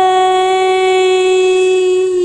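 A woman holding one long sung note at a steady, unwavering pitch, loud and close to the microphone.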